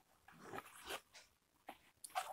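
Faint scraping and rustling of a cardboard shipping box as its tape is slit and the flaps are pulled open, with a light click near the end.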